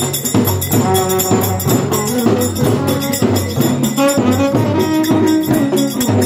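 Folk ritual music: barrel hand drums beat a steady rhythm with jingles, under a held wind-instrument melody.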